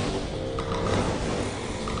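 Stage flame effects going off: bursts of rushing fire noise that swell about once a second, with steady low tones underneath.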